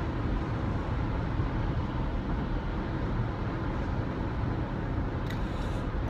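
Steady road and engine noise inside a moving car's cabin at highway speed.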